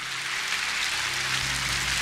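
A large audience applauding steadily in a big hall, a dense even clatter that swells slightly, over a faint low steady hum.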